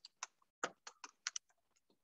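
Faint typing on a computer keyboard: about a dozen separate keystrokes at an uneven pace.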